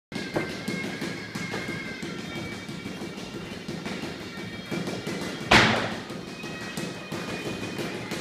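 Music playing through the gym, with a steady beat. About halfway through, one loud thud of a strike landing during kickboxing sparring, with a few lighter thumps around it.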